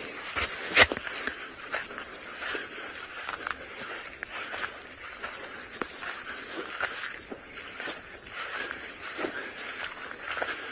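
Footsteps of people walking through dry grass and over sandy ground, irregular soft steps with brushing of the grass. One sharp click stands out about a second in.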